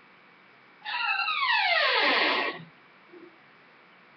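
An animal's long cry of about two seconds, starting about a second in and sliding steadily down in pitch from high to low.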